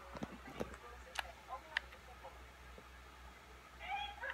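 Handling noise from a phone held on a bed: four sharp clicks and knocks in the first two seconds over a low steady hum.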